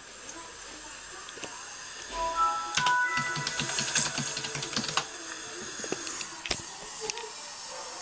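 A computer's short startup chime of a few notes stepping upward, about two seconds in. A quick run of clicks follows for a couple of seconds, like typing on a keyboard.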